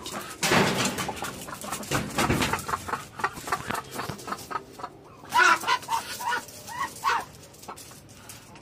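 Domestic fowl clucking in a pen: a quick run of about eight short clucks from about five seconds in. Two loud noisy bursts come earlier, about half a second and two seconds in.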